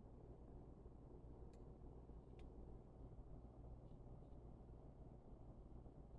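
Near silence with a few faint ticks, two of them about a second apart, from the metal of a 1500 W halogen patio heater expanding as it heats up.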